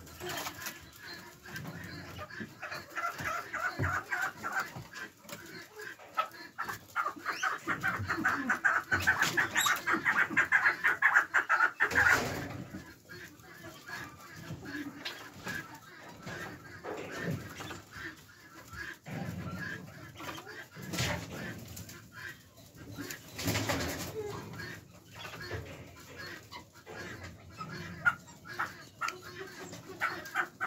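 Farmyard birds calling, chickens among them: a dense run of quick repeated calls that builds and breaks off sharply about twelve seconds in, then scattered calls and a few dull thumps.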